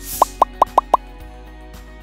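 Whoosh, then five quick rising pop sound effects about a fifth of a second apart, over steady background music: video-editing sound effects for on-screen text popping in.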